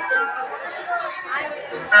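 Indistinct voices and chatter, with a little faint music under them; loud music cuts in at the very end.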